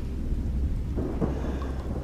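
Thunderstorm sound effect: a steady deep rumble of thunder with rain.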